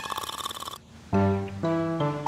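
Cartoon snoring sound effect, a rattling snore that stops within the first second, followed about a second in by music with held notes.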